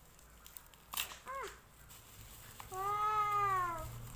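A cat meowing twice: a short meow just after a sharp click about a second in, then a longer meow that rises and falls near the end.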